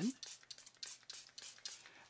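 Hand-pumped water spray bottle misting watercolour paper before a wash: a quick run of short hissing spurts, about four a second.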